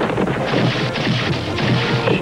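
Cartoon crash sound effect: a long, dense crashing noise made of many quick falling strokes, over background music.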